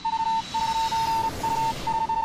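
An electronic beep, a single high steady tone sounding as a run of beeps of uneven length with short breaks, over a hiss of noise.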